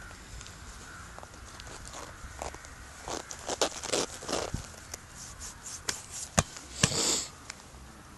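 Bare feet scuffing and crunching in beach-volleyball sand, in scattered steps, with one sharp knock about six seconds in and a short rush of noise just after.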